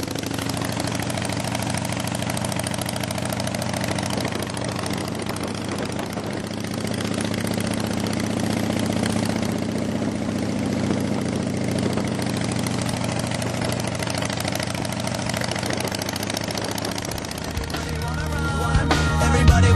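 Harley-Davidson V-twin motorcycles riding together at a steady cruise, their engines running as an even, low drone with small swells in loudness and no clear revving.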